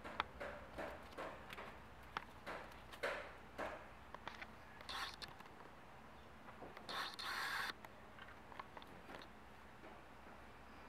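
Faint scratchy rustling and scraping in short irregular bursts, a kitten clambering about in a woven seagrass hanging basket, its claws catching on the weave, with a longer, louder rustle about seven seconds in.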